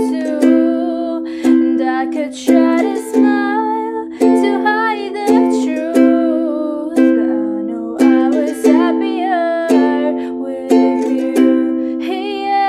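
A ukulele strummed in chords, with accented strokes roughly once a second, accompanying a woman singing a slow ballad melody.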